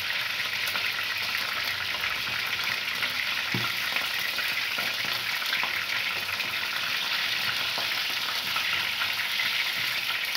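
Chicken feet, beef and fish frying together in hot fat in one pan: a steady, unbroken sizzle, with a few faint knocks.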